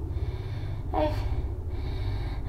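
A woman's short, sharp gasp about a second in, over a low steady drone.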